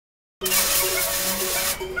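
MIG welder's arc crackling with a steady, even sizzle like bacon frying, the sound of a machine with its parameters set correctly. It starts about half a second in and breaks off just before the end.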